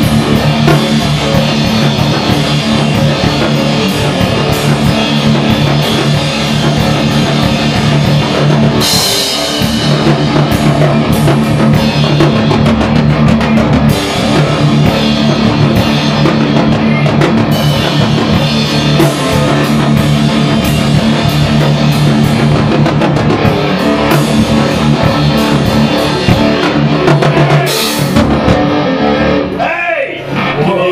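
A rock band playing live: a drum kit with cymbals driving a steady beat under an electric guitar. The music drops out briefly about nine seconds in, and a cymbal crash comes near the end as the playing stops.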